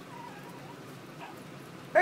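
A baby's faint whimper, a short, thin wavering cry early on.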